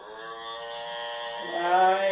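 A meditative chanted tone begins: one voice holds a steady note, then moves to another held note about one and a half seconds in, growing louder.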